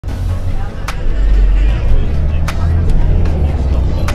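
City bus running, heard from inside the cabin: a heavy low rumble of engine and road noise with a few sharp rattling clicks and faint passenger voices.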